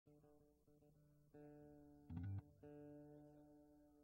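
Faint sustained notes and chords from a band's acoustic guitar and keyboards during pre-set tuning and warm-up, with a short louder low note about two seconds in.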